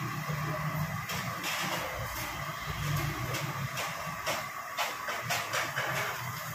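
Medu vadas deep-frying in a wok of hot oil, with a steady sizzle over a low steady hum, and a scatter of short metal clinks and scrapes as a wire strainer lifts the fried vadas out and tips them into a strainer basket.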